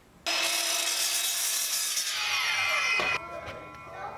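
Sliding miter saw starting suddenly and cutting through 3/4-inch birch plywood boards to length. Its whine falls in pitch near the end, then the sound drops sharply about three seconds in, leaving a fainter whine.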